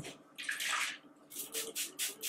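Hand-pump spray bottle misting water onto curly hair: one longer spritz about half a second in, then a quick run of short spritzes, several a second, near the end.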